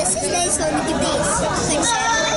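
Speech only: talking and background chatter of people in a crowded indoor room.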